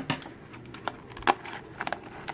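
A few sharp clicks and light crinkling from a small plastic toy basket in its plastic wrapper being handled, with a cluster of quicker clicks near the end as scissors are brought up to it.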